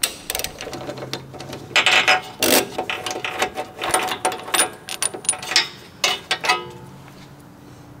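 A ratchet wrench clicking in short runs as a spark plug is undone from a small petrol engine, with metal clinks as the plug and socket are handled.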